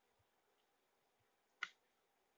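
Near silence, broken once by a single short sharp click about one and a half seconds in, from drawing instruments (compass and ruler) being handled on the paper.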